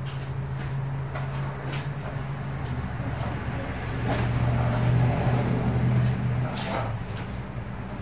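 A steady low motor hum that swells about four seconds in and eases off near the end, with a few faint clicks.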